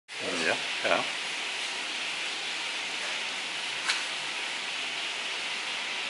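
A steady, even hiss with no pitch to it, broken only by one faint light tick about four seconds in; a voice says a short word near the start.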